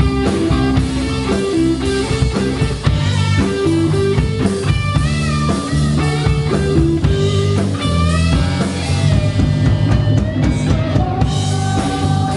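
Live rock band playing: electric guitar over bass guitar and drum kit, with a few guitar notes bending in pitch around the middle.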